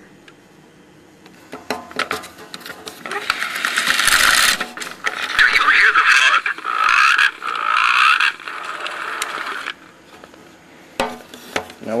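Mattel See 'n Say talking toy playing a recording from its built-in record, the needle vibrating the cone diaphragm. The sound is tinny and thin, starts about three seconds in after a few clicks of the mechanism, and stops just before ten seconds.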